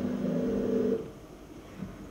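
Soundtrack of a projected documentary heard in a screening hall: a steady low hum that cuts off about a second in, leaving faint room noise with a small tick near the end.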